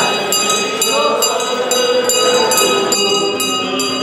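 Church bells rung by hand with ropes, clanging in a quick steady peal of about two to three strikes a second with long ringing overtones: the Easter bells rung to greet the Resurrection.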